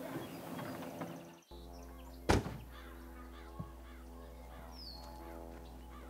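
Goose-like honking calls in the first second and a half. After an abrupt cut, a steady low hum with held tones, broken by one loud, sharp thunk a little past two seconds in and a fainter knock about a second later.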